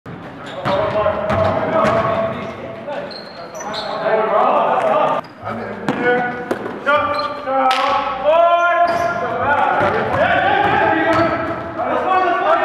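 A basketball bouncing repeatedly on a hardwood gym floor, mixed with players' voices and calls echoing in a large gym.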